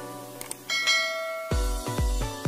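Two quick clicks and a ringing bell-chime sound effect from a subscribe-button and notification-bell animation. About three quarters of the way in, electronic dance music with heavy bass beats starts.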